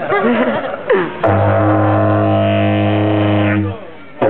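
Didgeridoo played live: about a second of rising and falling voice calls blown through the instrument, then a steady low drone with a bright overtone held for about two and a half seconds, stopping shortly before the end.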